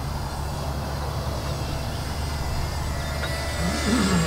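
Faint, steady high whine of a distant FPV quadcopter's motors in flight, over a steady low rumble.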